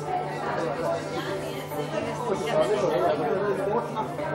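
Several people talking at once in a hall, a steady murmur of overlapping conversation with no single voice standing out.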